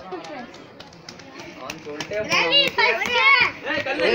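A group of children's voices, faint and scattered at first, turning into loud, high-pitched shouting about halfway through and ending in laughter.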